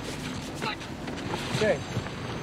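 Steady rushing noise, like wind, from the film's soundtrack, with a short spoken "okay" near the end.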